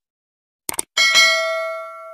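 A quick double mouse click, then a bright bell ding that rings on and fades away over about a second and a half: the click-and-bell sound effect of a subscribe-button animation ringing the notification bell.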